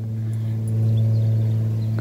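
A steady low hum with fainter overtones above it, growing a little louder through the middle.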